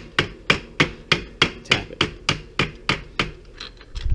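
A leather mallet tapping lightly and steadily on a crank arm puller tool, about three taps a second, to work a crank arm stuck by friction off the bottom bracket spindle. The taps stop a little before the end.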